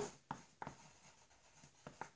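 Pencils writing on paper: a few faint, short scratching strokes as a word is written.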